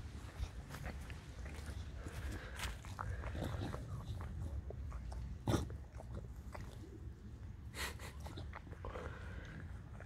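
English bulldog licking and mouthing soil with its face in the dirt: irregular wet licking, chewing and snuffling noises, with a louder sharp sound about five and a half seconds in and again near eight seconds.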